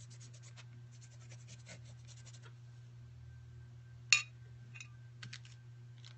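Paintbrush scratching across paper in quick, repeated strokes for the first two and a half seconds, with a few more strokes near the end. A single sharp click about four seconds in is the loudest sound. A steady low hum runs underneath.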